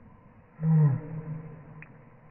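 Boston terrier giving one short low growl, about half a second in, dropping in pitch at the end.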